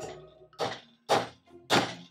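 Claw hammer driving a nail into a wooden board: four strikes a little over half a second apart, the later ones louder, sinking the nail flush.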